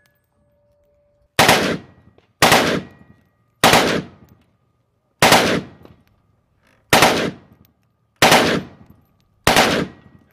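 Select-fire AKM rifle in 7.62×39 mm firing on full auto in seven short bursts, about one every second or so, each trailing off in a short echo.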